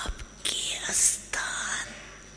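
An elderly woman's soft, breathy, half-whispered speech close to a microphone: three short utterances, the middle one ending in a loud hiss about a second in.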